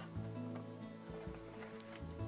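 Quiet background music with soft held notes, and faint light taps of paper card as an album flap is folded down near the end.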